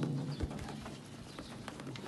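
Sheep eating grain feed from a trough, with faint clicks and a short low knock about half a second in. Behind them a bird coos.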